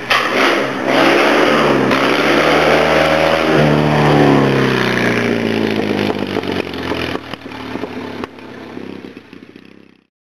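Rally car engine revving hard as it passes, climbing in pitch, with a sudden drop about three and a half seconds in like a gear change. It then fades as the car drives away, and the sound cuts off abruptly at the end.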